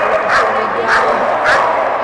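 Dogs barking repeatedly, a sharp bark about every half second, over a steady din of voices in a large echoing hall.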